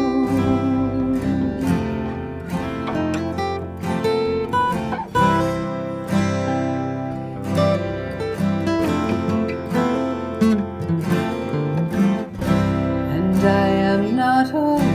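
Acoustic guitar playing an instrumental passage of a slow folk ballad, picked and strummed, with no clear singing.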